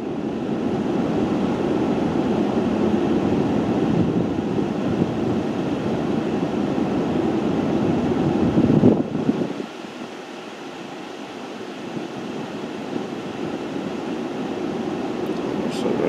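Engine of a game-drive vehicle running, a steady rumble that drops in level and loses its deepest part about ten seconds in.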